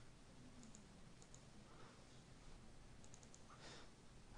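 Near silence: room tone with a few faint clicks from computer mouse and keyboard use, a couple about a second in and another few near the end.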